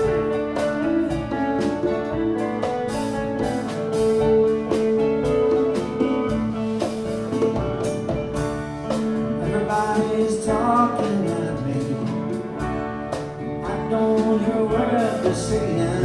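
A live band playing: electric guitars, bass and keyboard over a steady beat of drum hits.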